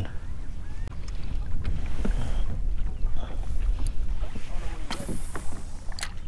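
Steady wind rumble on the microphone, with small waves lapping against a kayak hull and a few faint ticks.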